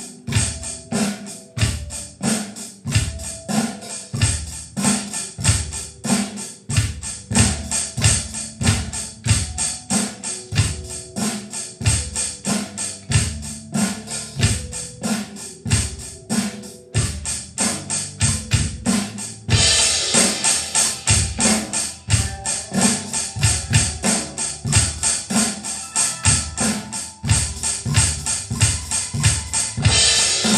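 Electronic drum kit played in a steady rock groove of bass drum, snare and cymbal strikes, over a backing track with bass and other pitched parts. About two-thirds of the way through, the cymbal sound becomes noticeably louder and brighter as the groove moves into a new section.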